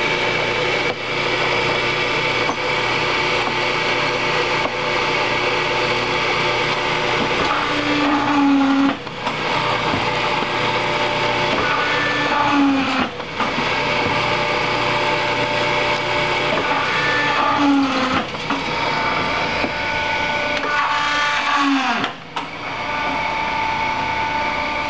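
Challenge EH3A three-head paper drill running, its motor giving a steady whirring hum with high, even tones. About four times, at intervals of roughly four seconds, the note bends and briefly drops as the heads are brought down through a stack of paper.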